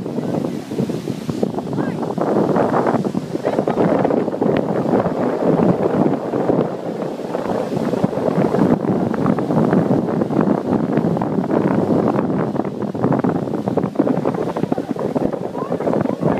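Wind buffeting the microphone over breaking ocean surf, a loud, steady rush throughout.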